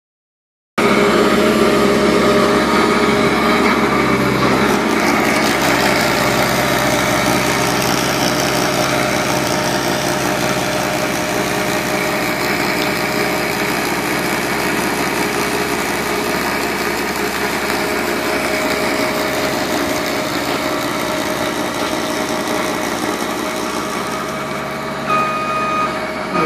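Caterpillar 277C compact track loader's diesel engine running steadily under load, driving a 67-inch Erskine 1812 snowblower attachment that is throwing snow. Its reversing beeper starts near the end.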